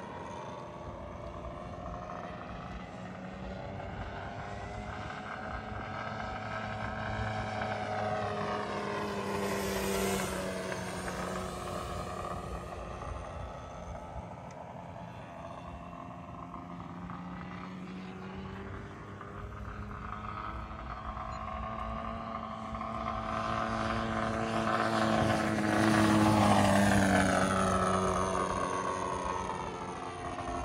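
Radio-controlled aerobatic model airplane flying overhead, its motor and propeller droning with pitch gliding up and down through manoeuvres. It grows louder as the plane passes closer about ten seconds in and again, loudest, near the end.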